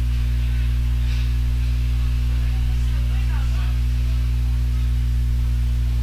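Steady, loud low electrical hum with several overtones, unchanging throughout: mains-type hum on the recording.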